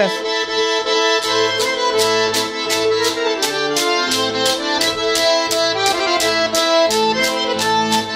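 Garmon, a Caucasian button accordion, playing a tune: a melody in the right hand over a steady, regular beat of bass notes and chords.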